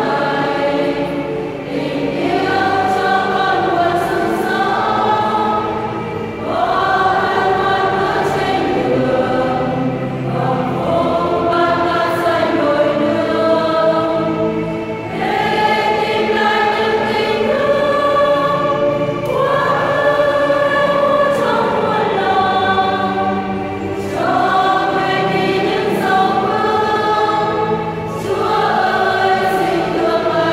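A women's church choir singing a hymn together, holding long notes in phrases of about four seconds with brief breaks for breath between them.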